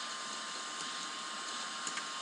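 Steady background hiss of the recording's microphone line, with a faint steady hum tone and one faint click near the end.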